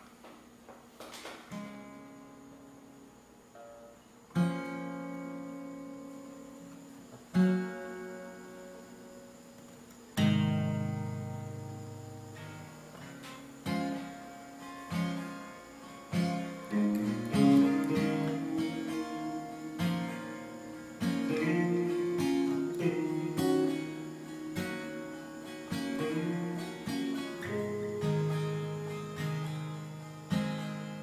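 Acoustic guitar playing the instrumental intro of a folk song: a few single chords left to ring out and fade, then a steadier picked and strummed pattern from about halfway through.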